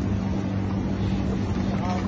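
A steady low hum under a hiss of background noise: the room tone of a shop. A voice murmurs briefly near the end.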